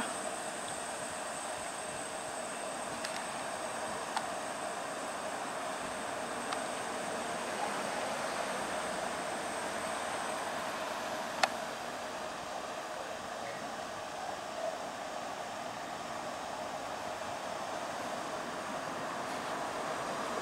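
Steady mechanical drone of machinery running, with a thin high whine that stops about halfway through and one sharp click shortly after.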